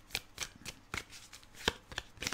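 A deck of round oracle cards being shuffled by hand: an irregular run of short, soft card clicks and slaps.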